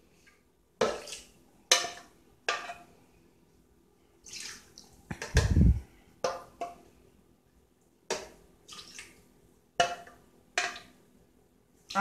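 A ladle scooping meat broth out of an aluminium pot and pouring it into a plastic blender jar: a string of knocks and clinks against the pot and jar, with splashes of liquid, and one heavier thump a little before halfway.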